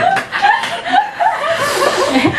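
People laughing and chuckling, mixed with a little talk.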